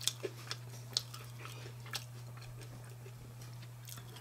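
A person chewing pizza close to the microphone: a few short, sharp crunchy clicks in the first two seconds, then quieter chewing, over a steady low hum.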